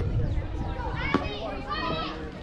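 Young girls' voices calling out and chattering around a softball field, with a single sharp click about a second in.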